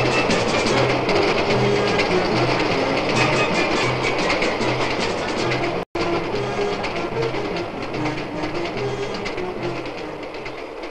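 Film score music played over a passing freight train, its wheels clattering on the rails in an even rhythm. The sound cuts out for an instant about six seconds in.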